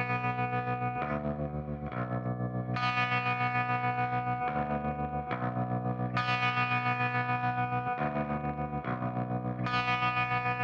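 Stoner-rock intro on distorted, effects-laden electric guitar: sustained chords move every second or two over a held high note, pulsing several times a second, with no drums or vocals.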